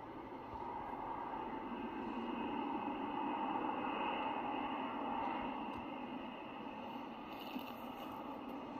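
Jet engines of a regional jet moving along a distant runway: a steady rushing noise with a whine in it that swells to its loudest about halfway through and then eases. Heard played back through a screen's speaker.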